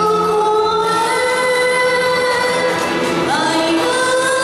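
A woman singing into a microphone over backing music, holding long notes and sliding up into a new, higher note near the end.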